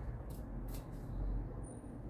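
A deck of oracle cards being shuffled by hand, with a few soft card clicks over a low background rumble.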